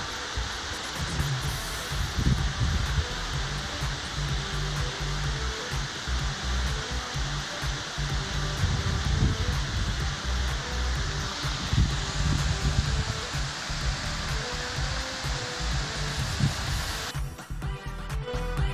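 Background music with slow low notes over a steady rushing noise; about a second before the end the rushing noise cuts out, leaving the music alone.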